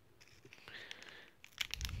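Scissors cutting open a paper hot-cocoa packet: a faint crinkly rasp of the blades through the packet, then a few sharp snips near the end.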